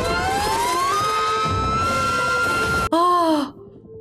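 Action-film soundtrack music with a long tone that rises over the first second and then holds steady. It cuts off abruptly near three seconds, followed by a brief voice-like exclamation.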